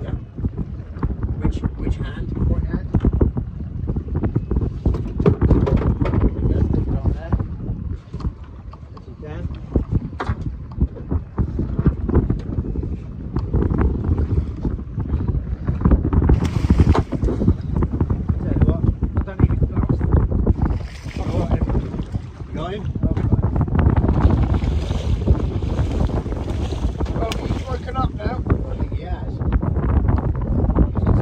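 Gusting wind rumbling on the microphone on a small open boat at sea, rising and falling in strength, with the wash of the sea around the hull.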